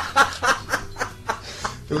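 A man laughing in a run of short bursts, about four a second, that die away.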